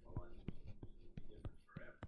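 A man speaking quietly, close to a whisper, in short broken bits with small clicks between them.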